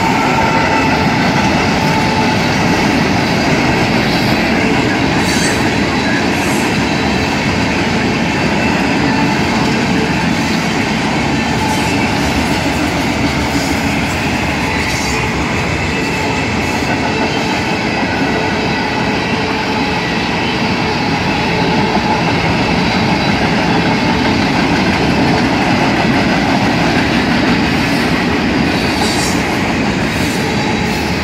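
Norfolk Southern freight train passing close by, loud and steady. The trailing GE ET44AC diesel locomotive goes by as it opens, then freight cars roll past with continuous wheel-on-rail rumble and clatter.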